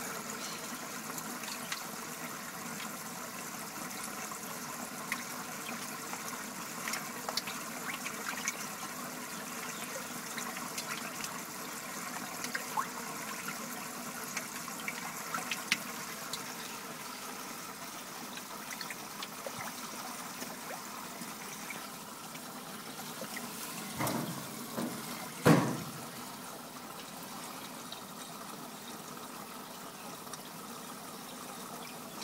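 Steady running, trickling water in a silver perch tank, with scattered small splashes and pops as the fish take floating pellets at the surface. Two louder knocks come near the end.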